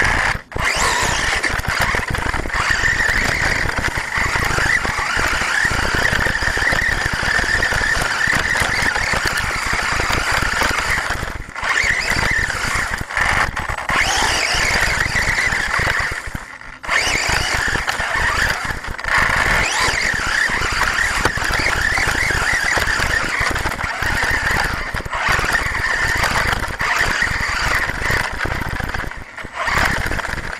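HPI Savage XS Flux's brushless electric motor and geared drivetrain whining at speed as the truck drives over grass, heard from a camera mounted on the truck. The whine dips out briefly a few times.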